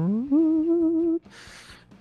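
A man vocally imitating a weird guitar-solo sound: a hum that slides up in pitch, then holds with a slight waver for about a second. A soft hiss follows, like a breath.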